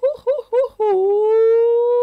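A voice chanting in the storytelling. A few quick syllables are followed by a long, high note that dips at its start and is then held steady for over a second.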